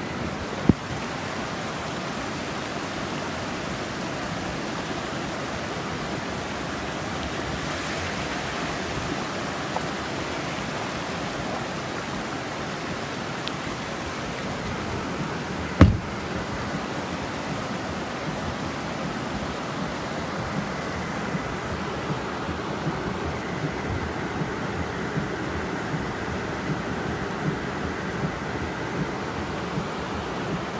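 Heavy rain beating on a vehicle's roof and windshield, heard inside the cabin as a steady hiss. A sharp knock comes just under a second in and a louder thump about sixteen seconds in.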